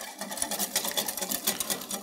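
Wire whisk beating cornmeal and stock into a slurry in a glass Pyrex measuring jug. The wires tick against the glass in a fast, even rhythm of clicks.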